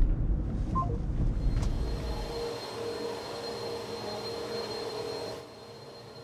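Low rumble of a car's cabin on the road for the first couple of seconds. It gives way to a quieter, steady hum with a thin high whine from an upright vacuum cleaner running across a room.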